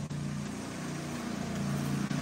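A steady low hum with an even hiss over it, like a motor running; the pitch of the hum shifts slightly.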